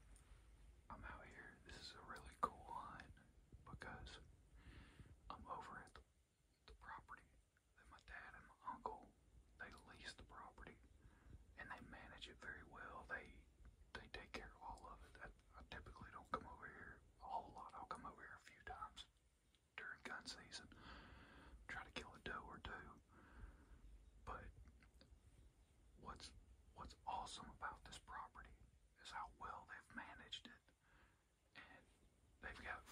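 A man whispering continuously, in short phrases with brief pauses, very quietly.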